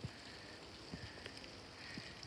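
Quiet outdoor background of light rain falling, a faint even hiss with a few soft ticks.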